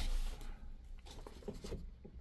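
Faint pencil scratching and a hand brushing on the paper of a printed score, as slur marks are pencilled in. The rubbing is strongest in the first half-second, then thins to a few light scratches.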